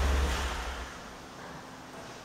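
A low, deep hum that dies away within the first second, leaving quiet room tone.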